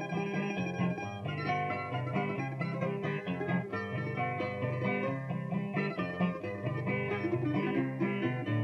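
Cuban punto guajiro instrumental interlude on plucked string instruments: bright picked melody over a steady, repeating bass pattern, played between the sung lines of the décima.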